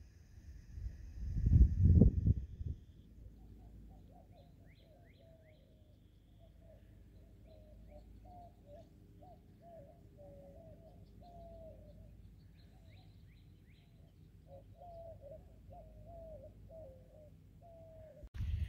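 Birds calling: a long run of short, low, gliding calls repeating through most of the stretch, with a few faint high chirps among them. A brief loud rumble of wind on the microphone comes about a second in.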